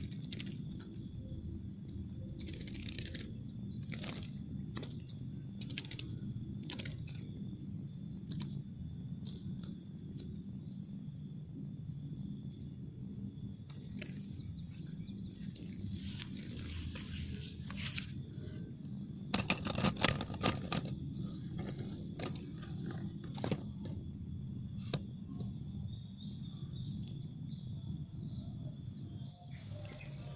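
Outdoor ambience: a steady high insect drone over a low rumble, with scattered small clicks and rustles. A louder patch of crackling rustles comes about twenty seconds in.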